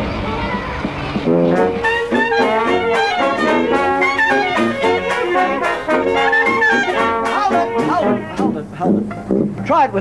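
A traditional jazz band playing: trumpet, trombone and sousaphone in ensemble, coming in clearly about a second in after a blurred mix of music. A voice speaks near the end.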